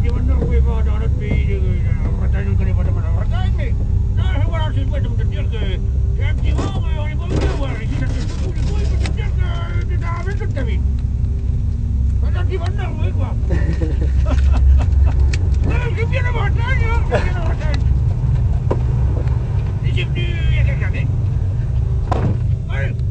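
People talking off and on over a steady low rumble.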